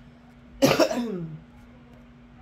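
A person clears their throat with one short cough about half a second in, its voiced tail falling in pitch and dying away within a second.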